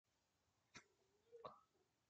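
Near silence, broken by two faint short clicks, the second about three-quarters of a second after the first.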